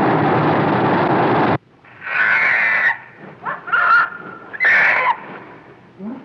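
Film sound effects: Godzilla's atomic breath firing as a loud, even rushing hiss for about a second and a half, cutting off suddenly. Then the baby Godzilla, Minya, gives three short, high, squealing cries, the middle one rising in pitch.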